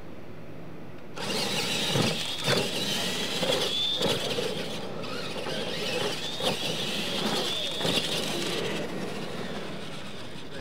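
Two electric radio-controlled monster trucks launch about a second in and race across dirt, their motors and gears whining at a high pitch. Several knocks come as they go over the ramps. The sound drops away shortly before the end.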